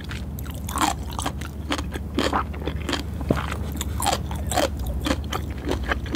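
Close-miked chewing of sushi, deliberately loud: a run of irregular mouth clicks and smacks.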